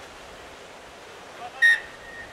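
A referee's whistle: one short, sharp blast about one and a half seconds in, over a steady outdoor background hiss.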